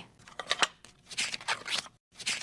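A run of short, scratchy rustling noises in irregular bursts, in three clusters with brief pauses between them.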